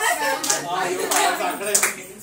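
A few sharp hand claps among a group's chatter, the loudest near the end.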